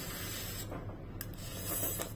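A person slurping hot noodles, sucking them in with an airy hiss that grows louder near the end.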